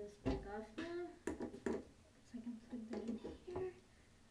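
A young woman's voice making low, wordless vocal sounds, half-mumbled and half-hummed, in short phrases with a held hum about halfway through. A dull thump just after the start and a couple of sharp clicks come from handling near the microphone.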